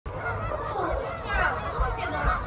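A large flock of Canada geese honking, many calls overlapping in a continuous chorus.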